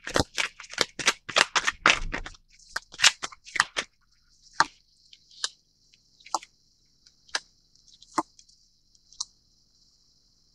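Tarot cards being shuffled by hand, a quick run of crisp snapping clicks for about four seconds. Then single sharp clicks about a second apart as cards are drawn and laid down on the table.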